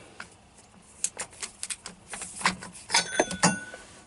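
Irregular metallic clicks and clinks, with a short ringing tone near the end: a ratchet and oil-filter cup wrench being handled at the freshly tightened oil filter.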